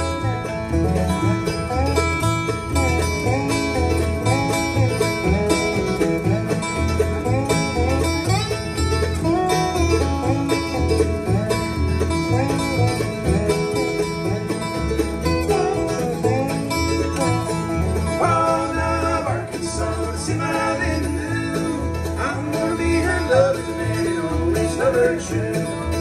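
Bluegrass band playing an instrumental break between verses: upright bass, acoustic guitar and fiddle over a steady bass beat. The singing comes back in near the end.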